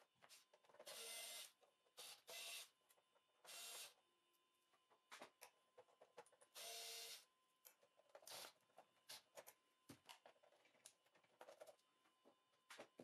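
Cordless electric screwdriver running in four short whirring bursts of about half a second each, backing out the screws of a TV's back cover and wall-mount bracket. Light clicks and taps of screws and the plastic cover come between the bursts. Faint overall.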